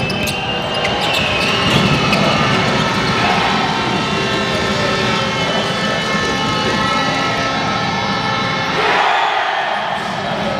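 Live sound of an indoor basketball game: a ball dribbling on the hardwood over arena crowd noise, with the crowd swelling briefly near the end as a basket goes in.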